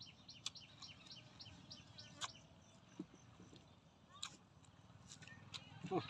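Faint chewing with sharp wet mouth clicks and smacks every second or so. In the background a bird calls a quick run of short high notes, about five a second, for the first two seconds.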